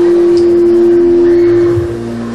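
Public-address microphone feedback: a loud, steady, single-pitched howl held through a pause in the speech, dying away near the end.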